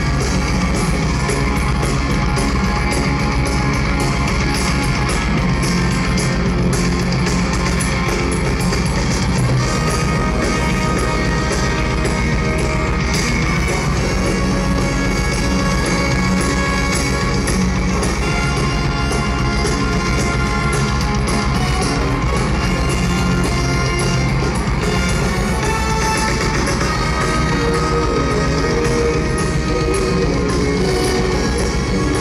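Rock band playing live, with electric guitars and a drum kit, amplified through a large open-air PA and recorded from within the crowd.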